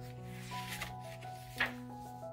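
Soft background music of steady held notes, with the paper rustle of a picture-book page being turned by hand, sharpest in a brief swish about one and a half seconds in.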